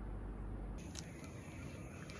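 Faint low hum that gives way, about a second in, to two sharp clicks, followed by faint background noise.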